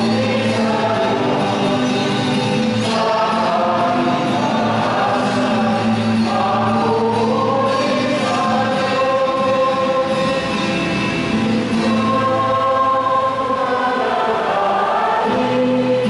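Church choir singing a hymn in long held phrases over steady sustained accompaniment notes.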